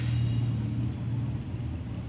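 A low steady rumble, loudest in the first second and a half and then easing off.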